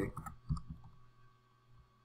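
A few computer-keyboard keystrokes, short separate clicks in the first second, with one faint click near the end.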